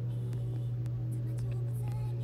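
A steady low hum holds at one even pitch throughout, with a few faint soft ticks above it.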